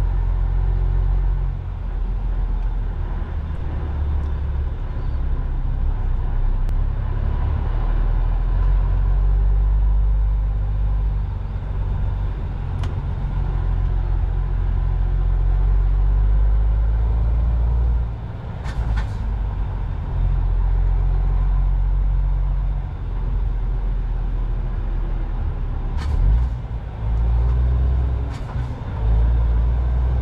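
Lorry cab interior: the diesel engine and road noise rumble steadily as the truck rolls along. The rumble drops off briefly a little past halfway, followed by a short hiss of air, then drops twice more near the end.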